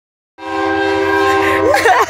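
Diesel locomotive horn sounding one long blast, a chord of several steady tones. It starts a moment in and stops just before the end, with a voice breaking in over its last moments.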